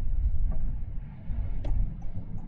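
Low, steady rumble inside a moving car's cabin, with a couple of faint clicks.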